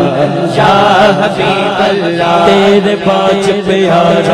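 A man singing a Punjabi naat in a long, melismatic devotional melody over a steady, sustained drone of male voices chanting behind him, with no instruments.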